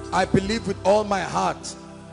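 A man's voice speaking emphatically into a microphone over background music of sustained chords. The voice stops about three-quarters of the way through while the chords hold.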